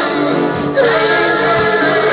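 Music with a group of voices singing a song. The singing breaks off briefly just under a second in, then a new phrase starts.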